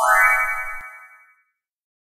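Short electronic transition sound effect: a pitched chime that glides upward with a shimmer above it, then fades away within about a second and a half.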